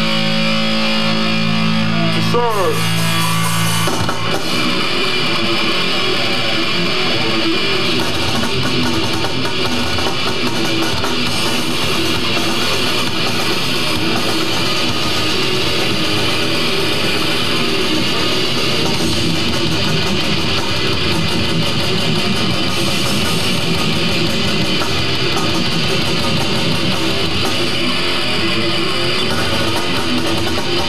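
Death metal band playing live through a club PA: a held electric guitar chord, a sliding dive in pitch about two seconds in, then the full band comes in about four seconds in with guitars and rapid drumming that carries on.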